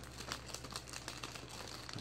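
Thin plastic bag crinkling in a series of faint crackles as plastic model-kit sprues are pushed back inside it.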